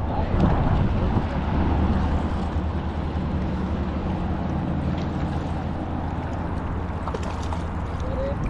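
Steady low hum with an even rushing noise of wind and water on a small fishing boat.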